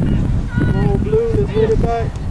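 Wind buffeting the microphone with a low rumble throughout, and from about half a second in, a voice farther off calling out in long, drawn-out shouts.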